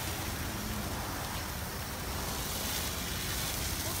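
Steady hiss of a self-serve car wash wand spraying coloured foam conditioner onto the side of a pickup truck.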